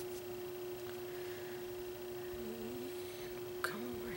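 A steady, faint hum at one pitch under quiet room tone. A brief faint murmur comes about halfway, and a soft click comes near the end.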